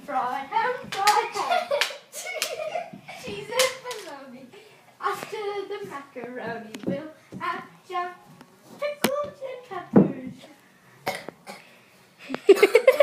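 Children's voices calling out and exclaiming during play, broken by sharp knocks of plastic mini hockey sticks striking the puck and each other, with the loudest knocks about nine and ten seconds in.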